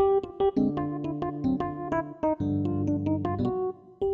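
Electric piano playing an improvised jazz passage: quick melody notes over held chords in the low register, with a brief lull just before the end.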